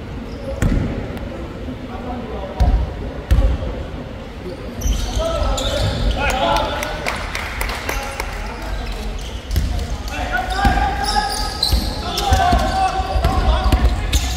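Indoor basketball game: a ball bouncing on the hardwood court in a few separate thuds at first, then, from about five seconds in, busier play with repeated bounces and players' shouting voices echoing in the hall.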